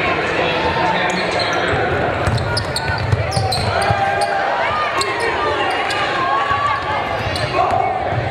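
Live basketball game sound in a large gym: players and spectators shouting and calling out, with the ball bouncing on the hardwood court.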